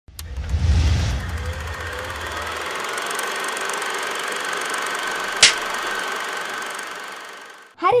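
Intro sound effect for a film-strip title animation: a low rumbling swell in the first second, then a steady whooshing hiss with a high held tone, one sharp click about five seconds in, fading out near the end.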